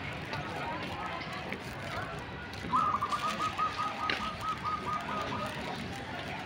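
A bird calling a fast run of about a dozen repeated high notes, starting about three seconds in and lasting under two seconds, over a faint murmur of distant voices.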